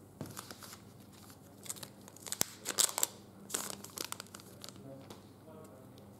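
Foil wrapper of a Panini Prizm trading-card pack being torn open and crinkled in the hands, in several bursts, loudest about halfway through.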